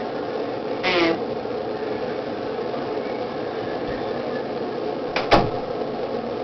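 Steady whirring room noise, like a fan running, with a brief vocal sound about a second in and a single knock near the end.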